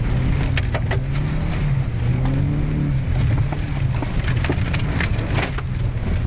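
Volvo 740 engine working hard, heard from inside the cabin as the car drives through slushy, rutted mud. Its note rises a little a couple of seconds in. Mud, slush and grit clatter and knock against the body throughout, most densely near the end as slush splashes over the windshield.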